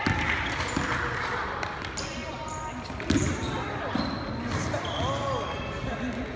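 A basketball game on a hardwood gym floor: the ball bouncing in irregular knocks, with short high squeaks from shoes on the court, in a large echoing gym.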